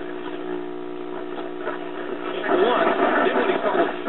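Late-1940s GE five-tube AM radio's speaker giving a steady hum with static, a hum the repairer takes for a failing electrolytic filter capacitor. About two and a half seconds in, a sports announcer's voice from the station comes through over the hum.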